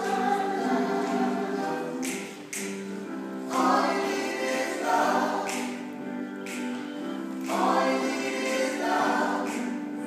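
A choir singing in sustained, slowly changing chords.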